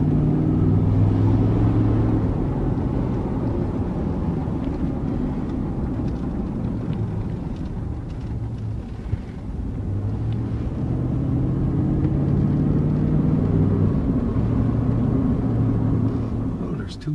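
Engine and road noise of a vehicle heard from inside its cab while driving slowly: a steady low drone whose engine note fades somewhat in the middle and comes back. There is a single small click about nine seconds in.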